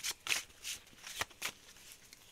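A deck of oracle cards being shuffled by hand: about five short papery swishes at uneven intervals.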